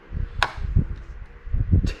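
A small brass wheel hex with its add-on weight set down on the plastic platform of a digital scale: a sharp click about half a second in, low handling bumps, and a second click near the end.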